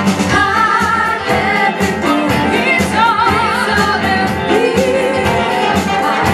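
Live soul band performance: a singer holds long notes with wide vibrato over drums and bass, the drums keeping a steady beat.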